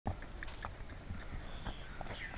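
Hoofbeats of a ridden horse walking down a dry dirt track: a few irregular, soft knocks.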